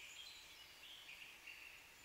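Near silence: a faint, steady high hiss.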